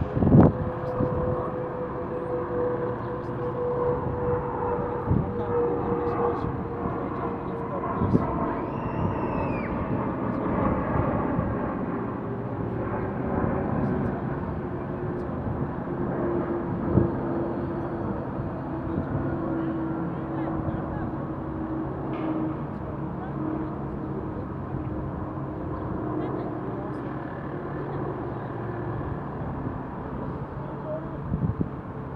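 Outdoor city ambience: a steady wash of distant traffic under a low engine drone that slowly falls in pitch over about twenty seconds, like a vehicle or aircraft passing, with a few soft knocks and faint voices.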